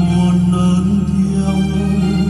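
Music from a Vietnamese Catholic hymn, with long held notes over a steady bass.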